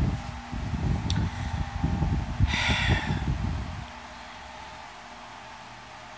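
Uneven rubbing and rustling noise close to the phone's microphone for about four seconds, with a click about a second in and a short breathy hiss midway, then it stops.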